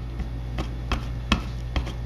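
A household sponge dabbing rust antiquing solution onto a metal fan grill: a few irregular light taps over a steady low hum.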